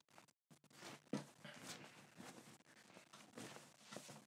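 Near silence with faint cloth rustles as a cotton T-shirt is pulled on over the head, the clearest rustle about a second in.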